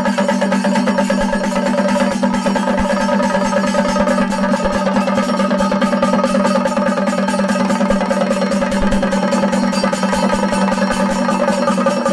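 Chenda drums beaten with sticks in a fast, dense, continuous rhythm, with ilathalam hand cymbals clashing along, over a steady held drone: a Kerala temple chenda melam ensemble.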